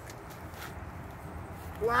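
Low, steady outdoor background with no distinct event, then a loud exclamation of 'wow' near the end.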